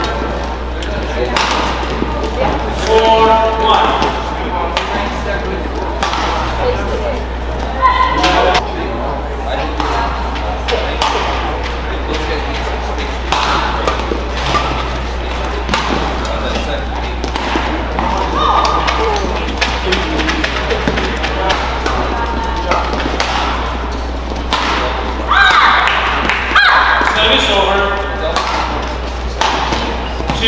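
Badminton rally in an indoor arena: rackets strike the shuttlecock again and again with sharp cracks, and short pitched squeaks and cries come at several moments, most of them near the end, over a steady low hum.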